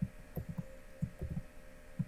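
Soft, low thumps and clicks of a computer keyboard and mouse being worked at a desk, a cluster of them in the middle, over a faint steady hum.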